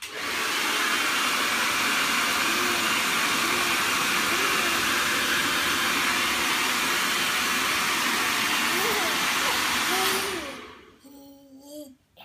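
Handheld hairdryer blowing steadily, switched on at the start and winding down about ten seconds in. A baby's squeals and coos come through faintly over it, and the baby babbles briefly once it stops.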